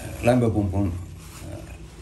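A man's voice speaking briefly in Finnish, a hesitant phrase for the first second, then a short pause.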